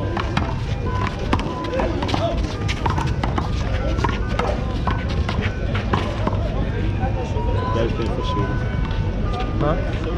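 Small rubber handball being slapped by hands and smacking off a concrete wall during a rally: a string of sharp slaps and knocks, with footsteps on the court. Music with steady tones plays in the background.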